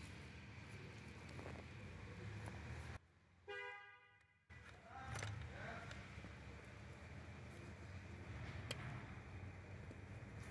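Quiet workshop background with light handling noise. About three and a half seconds in, the sound drops out abruptly and a short horn-like tone of about a second sounds. A single faint click comes near the end.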